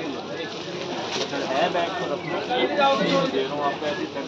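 Indistinct voices talking in a busy market shop, with general background bustle.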